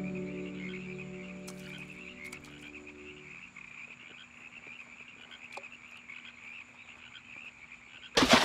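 Soft held music chords fade out over the first three seconds, leaving a steady, high, pulsing chorus of calling animals by the water, with a few faint clicks.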